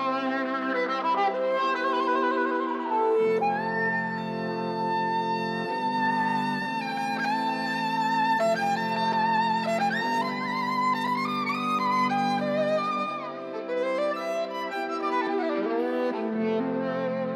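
Amplified 3D-printed electric violin (3Dvarius) playing a slow melody with vibrato, over sustained low chords that change every few seconds.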